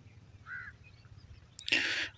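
Mostly quiet room tone with the faint, brief squeak of a felt-tip marker writing on paper about half a second in. Near the end there is a click and a short breathy rush, like an intake of breath.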